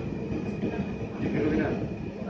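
Electric commuter train (KRL) moving slowly, heard from inside the carriage: a steady low rumble with a faint steady high tone over it.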